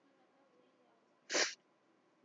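Near silence broken about one and a half seconds in by one short, sharp burst of breath noise from a person close to the microphone, lasting about a quarter of a second.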